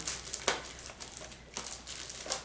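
Clear transparent tape being pulled and pressed onto a plastic basket and its wrapped items: soft rustling, a sharp click about half a second in, and a brief louder rustle near the end.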